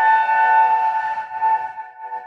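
A struck bell ringing on: one steady tone with several higher overtones, slowly fading.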